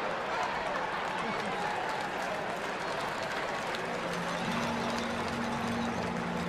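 Steady ballpark crowd noise, voices murmuring with scattered clapping. A low steady hum joins about four seconds in.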